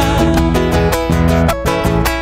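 Live folk band playing an instrumental passage of a chacarera. Strummed acoustic guitar leads over bass guitar, electric guitar and a drum struck with sticks, with no singing.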